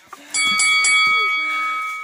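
A bell chime sound effect of the kind laid over a subscribe-and-notification-bell animation: three quick ringing strikes about a third of a second in, then a bright ringing tone that fades slowly. It is the loudest sound here.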